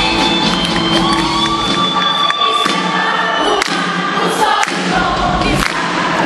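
Live concert music: a female lead singer with a band. About two seconds in the low bass and drums thin out, and many audience voices singing along and cheering carry on with the music.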